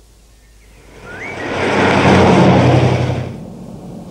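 A car driving past on a road, its engine hum and tyre noise swelling up about a second in and fading away shortly before the end.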